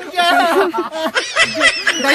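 Young men laughing, mixed with bits of excited speech.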